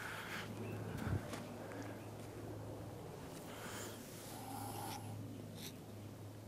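Quiet outdoor ambience: a faint steady low hum with a few soft rustling noises and one light click shortly before the end.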